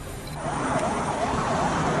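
Emergency vehicle siren starting about half a second in, its pitch sweeping rapidly up and down two or three times a second, over a steady rush of noise.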